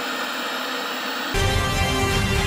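Television static hiss, cut off about a second and a half in by louder film music with a heavy bass.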